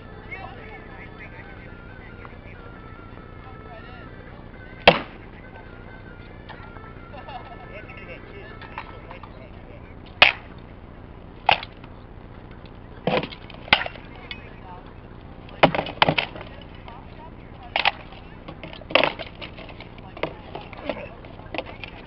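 Rattan swords striking shield and armour in SCA armoured sparring: a dozen or so sharp cracks, one on its own about five seconds in, then coming more often from about ten seconds on, some in quick pairs.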